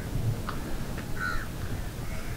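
Crows cawing: a few short, harsh calls about half a second to a second and a half in, over a low steady background rumble.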